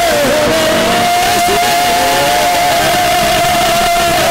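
A man singing one long held note into a microphone, with a slight waver, in a Malayalam devotional song, over steady low instrumental accompaniment that comes in about halfway through.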